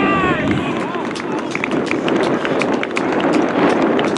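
Outdoor football-pitch sound with a steady rumble of wind on the microphone and distant players' shouts, including one loud shout right at the start.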